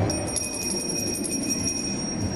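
A high, steady ringing tone, like a bell, held for nearly two seconds and stopping near the end, over the low noise of a large hall.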